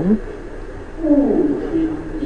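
A quieter voice speaking briefly about a second in, its pitch falling and wavering, between stretches of low room noise.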